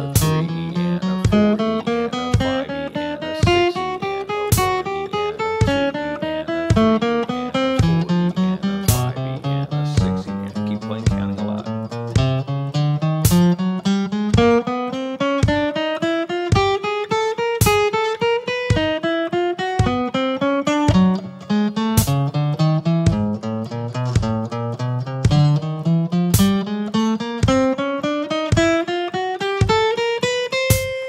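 Strat-style electric guitar picked in steady sixteenth notes: a four-finger fretted accuracy drill with no open strings, each group of notes climbing in pitch and the next starting higher as the hand moves up the neck. A steady click on the beat runs underneath.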